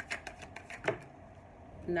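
A tarot deck being shuffled in the hand: a quick run of soft card slaps and clicks in the first second, then quieter.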